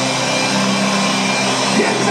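Live rock band holding a steady chord at full volume in an arena, under a dense wash of crowd noise.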